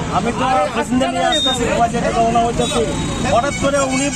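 A man talking in a steady stream, over a constant low background rumble.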